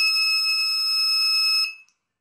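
Electronic buzzer on an Arduino keypad door lock sounding one long, steady, high-pitched beep while the lock is unlocked after a correct PIN; it cuts off shortly before the lock resets.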